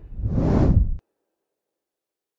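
A whoosh sound effect that swells over about a second and cuts off suddenly.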